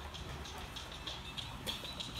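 Faint background music over a low steady hum, with a few light footstep taps on a hard floor.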